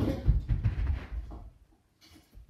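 A series of dull thuds and rustling from someone moving right beside the phone, loudest in the first second and fading out about a second and a half in.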